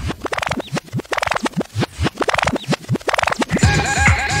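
A vinyl record being scratched back and forth on a turntable in quick strokes, each stroke sweeping the pitch up and down, with the track's beat dropped out. Near the end a new track with a steady beat comes in.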